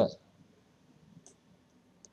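A spoken word ends right at the start, then near quiet with two faint, short computer-mouse clicks a little over a second in.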